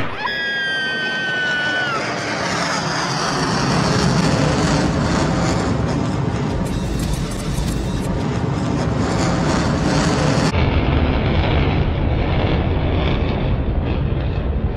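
Jet aircraft passing overhead: a whine that falls in pitch over the first two seconds, then a steady, loud engine roar, with music mixed underneath.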